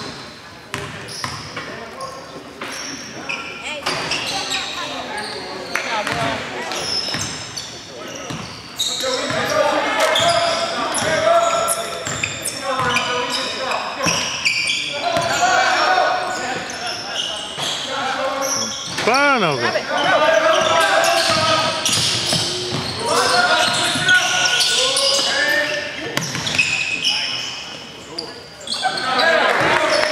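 Basketball game sounds in an echoing gym: a basketball bouncing on the hardwood floor again and again, amid players' voices calling out.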